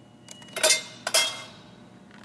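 Two sharp metallic clinks about half a second apart, each with a brief ring, as a product is put through the chute of a pharmaceutical capsule metal detector. A faint steady high whine can be heard before them.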